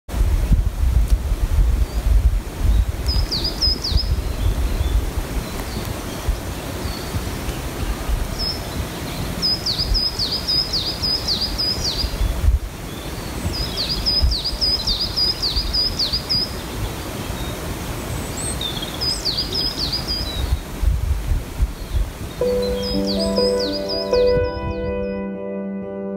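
A small songbird gives several bursts of quick, high, repeated chirping notes over a rough, gusty wind rumble on the microphone in a conifer forest. Soft ambient music fades in near the end.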